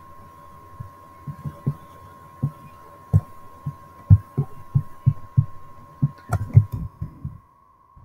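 Irregular soft low thuds, a dozen or more at roughly one to two a second, from a mouse being worked on a desk and carried through to the microphone; they stop shortly before the end. A steady high-pitched whine runs underneath.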